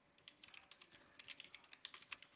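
Faint typing on a computer keyboard: a run of quick, uneven key clicks as a short sentence is typed.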